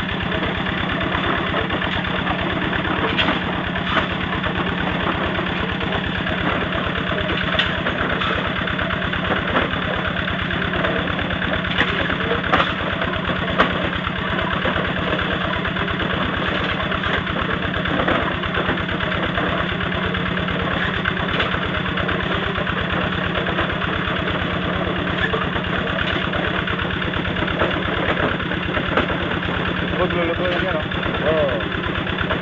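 An engine running steadily at an even speed, a constant hum with fast, even pulsing, with a few light clicks over it.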